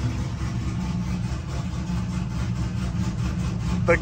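Pontiac G8's engine idling steadily just after a cold start, heard from inside the cabin as a low, even rumble. The idle shakes the car enough to shake the camera.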